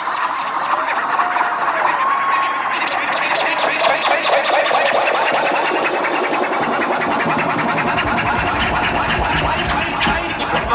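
Loud live club music from a hip-hop DJ set with crowd noise, recorded close on a phone in the audience. A heavy bass beat comes in about eight seconds in.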